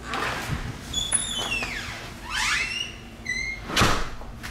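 A door squeaking on its hinges in a few high squeals, one falling and one rising in pitch, then shutting with a thump near the end.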